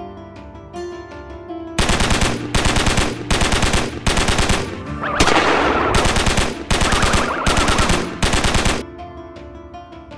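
Automatic gunfire in a string of short bursts, each about half a second long, lasting about seven seconds; one longer burst near the middle has a hiss over it. Light music plays before the shooting starts and returns near the end.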